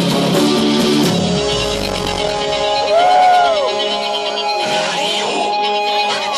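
A live rock band played through a concert PA and heard from the crowd. A heavy guitar-and-drum part drops away about a second in, leaving held synth and guitar tones, with one note sliding up and back down near the middle.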